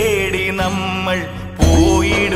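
Malayalam song: a voice holds long, wavering sung notes over a backing track with a steady bass line, with a brief break about one and a half seconds in.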